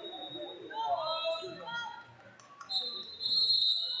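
A referee's whistle blown in one long, shrill blast starting a little under three seconds in, stopping the action as the wrestlers go out of bounds. Under it, the steady chatter of a crowd in a big hall.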